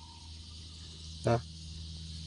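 Steady high-pitched chirring of insects, with a low steady hum underneath.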